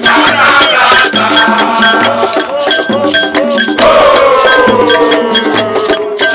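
Live supporters' drumming: hand drums beating a fast, steady rhythm with a high ringing bell-like strike keeping time, hands clapping, and voices singing along. Just before the four-second mark a long note slides slowly downward over the beat.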